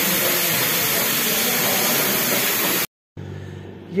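Pressure cooker venting steam past its lifted weight valve: a loud, steady hiss that cuts off suddenly about three seconds in, leaving a faint low hum.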